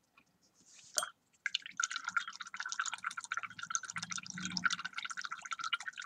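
Paintbrush swished in a mug of rinse water, a rapid watery patter lasting about four and a half seconds, after a single knock about a second in.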